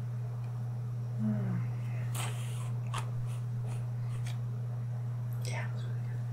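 Soft close-microphone whispering with a scatter of short, crisp strokes from about two seconds in, over a steady low hum.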